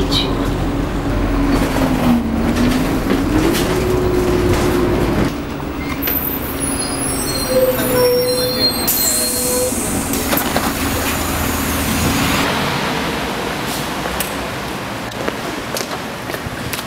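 Ride heard from inside a city bus: engine rumble with a whine that dips and rises in pitch. About five seconds in, the rumble drops off abruptly, and high squealing tones follow for a few seconds before lighter street noise near the end.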